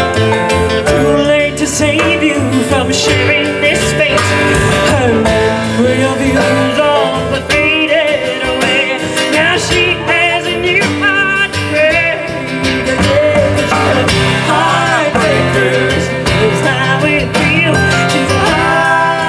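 Live blues band playing: a woman singing over acoustic guitar, upright bass, electric stage piano and drums.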